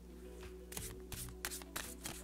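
A deck of tarot cards shuffled by hand: a faint, quick, irregular run of soft card flicks and taps.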